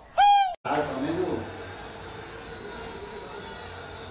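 A short pitched sound effect, about half a second long, whose pitch rises and falls. It is the loudest thing here, followed by a man's brief "ah" and a faint steady background hiss.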